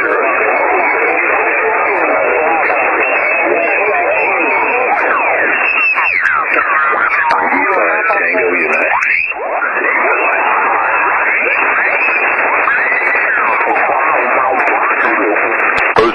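An amateur radio pile-up: many stations calling over one another at once on single-sideband voice, heard through a receiver's narrow passband, with whistling tones that glide up and down through the jumble.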